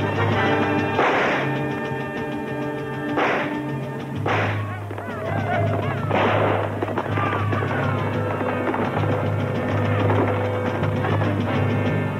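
Orchestral western film score with sustained low chords, cut through by four sharp rifle-shot bursts in the first half and high yelling war cries of charging horsemen.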